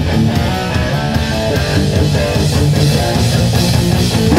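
Hardcore punk band playing live: distorted electric guitar and bass guitar strumming a riff, loud and steady.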